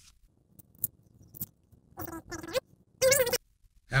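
A guitar instrument cable being taken out of its cardboard packaging by hand: a few light clicks, then two short bursts of rustling and handling about two and three seconds in.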